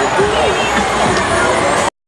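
Street crowd shouting and chattering over the low running of large vehicle engines, cut off abruptly just before the end.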